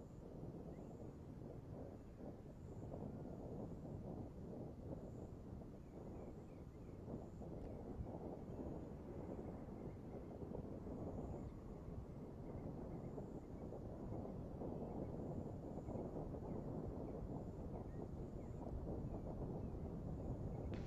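Faint, steady low rumble of wind on an open outdoor microphone, with a few faint high chirps now and then.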